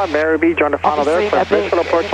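Conversation between two people over a cockpit headset intercom, with a steady low hum underneath.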